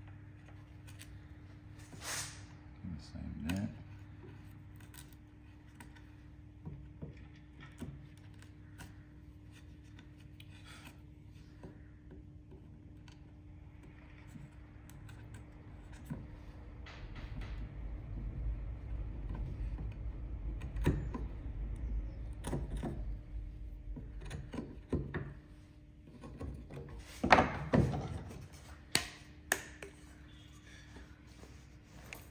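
Sharp wood chisel paring away timber by hand: intermittent scraping cuts and small clicks, busier through the middle, with a few louder knocks near the end.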